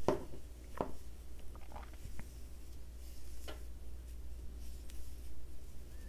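Crochet hook and yarn being worked by hand while making double crochet stitches: faint scattered clicks and rubbing, over a low steady hum.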